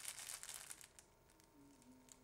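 Faint crinkle of packaging as two rolls of elastic bandage are handled, in the first second or so; the rest is near silence.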